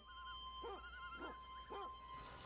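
A dog barking faintly, three barks about half a second apart, each falling in pitch, with a faint wavering call above them.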